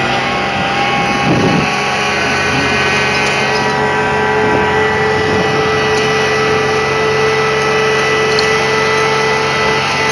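Crane engine running steadily under load, with a steady high whine, as it hoists a bungee-jump cage on its cable.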